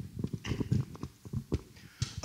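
Soft, irregular knocks and clicks in quick succession, with a faint rustle, picked up through a microphone.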